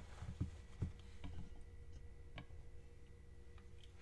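A few faint, light clicks and taps from a metal tube cake pan being handled and lifted off a freshly turned-out pound cake, mostly in the first second and a half with one more a little past the middle, over a faint steady hum.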